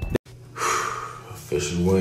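A man drawing a sharp breath about half a second in, then a short voiced sound about a second and a half in.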